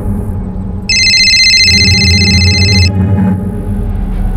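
Tense background score: a low droning bed, with a loud, steady, high electronic tone held for about two seconds in the middle.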